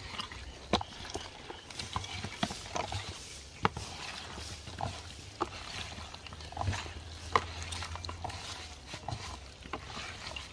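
Hands working seasoning into raw goat meat in a bowl to marinate it: irregular wet squelches and small clicks.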